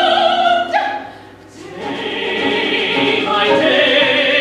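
Live opera singing with a small chamber orchestra. A held, wavering note breaks off a little under a second in, and after a brief quieter gap the voices and instruments start again.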